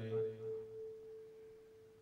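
A faint, steady single-pitched tone, a hum from the lecture's public-address system. Under it the echo of a man's amplified voice dies away in the first second.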